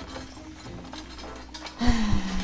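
Faint clicking and rattling of wreckage and debris being shifted, from a TV episode's soundtrack, under quiet music. Near the end a sudden loud low thud starts, with a held low tone.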